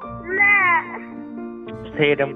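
A single drawn-out meow-like call that rises and then falls in pitch, over steady background music.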